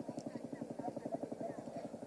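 Faint, steady rapid chopping of a helicopter's rotor, about fifteen beats a second.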